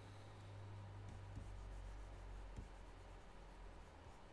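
Faint scratching of a stylus on a drawing tablet as strokes are sketched, with a few soft ticks over a low steady hum.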